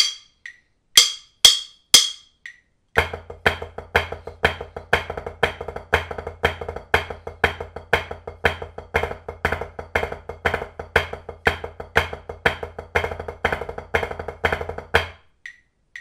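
Drumsticks on a rubber practice pad sitting on a marching snare, playing a triplet-based flam rudiment exercise: a few sharp clicks count it in, then an even stream of accented flams and taps from about three seconds in. The playing stops suddenly about a second before the end.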